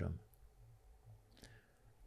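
A quiet pause in conversation: faint room tone after a man's last word, with a single small click about one and a half seconds in.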